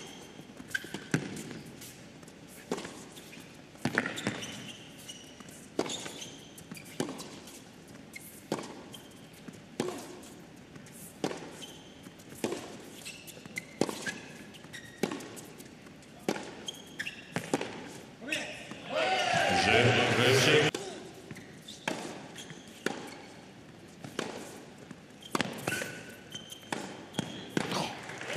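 A tennis rally on an indoor hard court: the ball is struck by racquets and bounces in a steady back-and-forth, one sharp hit roughly every second and a half. About two-thirds of the way through, a brief burst of cheering and shouting breaks in as the point ends, and the hits pick up again afterwards.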